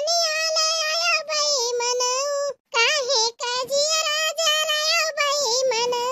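A high-pitched cartoon voice singing, with long wavering held notes broken by short breaths.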